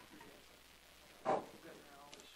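Faint, indistinct murmur of several people talking in a classroom. A single short, loud sound close to the microphone comes a little past halfway.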